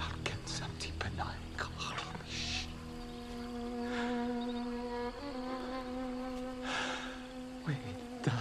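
An insect buzzing at a steady pitch, starting about three seconds in, with a few short hissing breaths over it. A low drone and some clicks fill the first few seconds before the buzz.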